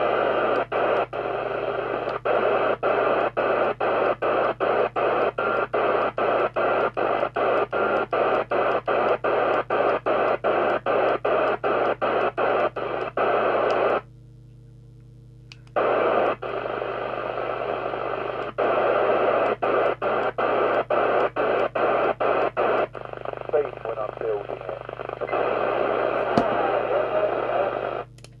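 PNI 8000-series FM CB radio receiving a weak, distant station on channel 19 through its loudspeaker: mostly noise with faint speech under it. The hiss is chopped by short regular dropouts about three times a second and cuts out for about two seconds midway, leaving only a low hum.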